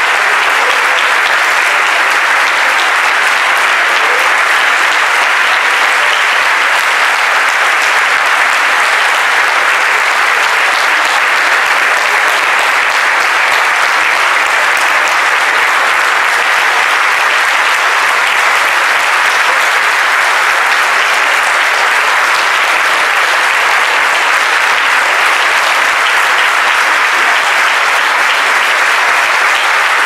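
Audience applauding: steady, unbroken clapping from many people that keeps up at an even level throughout.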